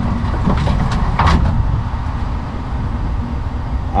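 Pickup truck engine running with a steady low rumble as the truck reverses slowly under a fifth-wheel trailer, with a few light metal knocks as the trailer's pin box slides into the fifth-wheel hitch. The hitch jaws do not fully lock, because the pin box is set a little too high.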